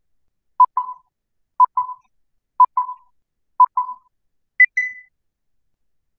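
A countdown of short electronic beeps, one a second: four at the same pitch, then a fifth one higher, each trailed by a brief echo.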